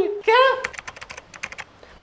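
A quick run of about ten light, sharp clicks in roughly one second, like fingers typing on a keyboard. It follows a short spoken word.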